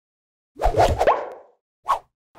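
Animated-logo sound effects: a short burst with a quick upward-gliding tone starting about half a second in, then a second brief burst near the end.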